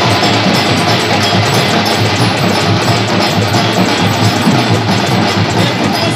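A group of dhol drums, large two-headed barrel drums beaten with sticks, played together in dense, continuous drumming with a deep beat.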